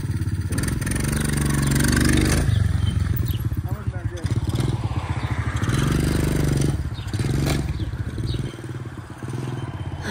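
Small moped engine given heavy throttle for a wheelie attempt, its revs rising twice as it pulls away, then dropping back and growing fainter near the end as the bike rides off.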